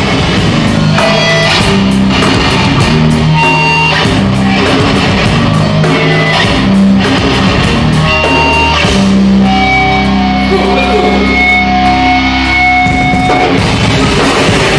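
A heavy rock band playing live and loud: electric guitar over a drum kit, with drum hits throughout and held guitar notes in the second half.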